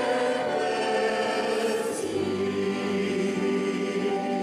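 A man and a woman singing a hymn as a duet into microphones, holding long notes that step down to a lower pitch about halfway through.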